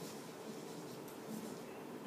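Faint chalk strokes on a blackboard.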